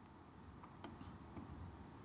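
Near silence: faint room tone with a low hum and a few faint, isolated clicks.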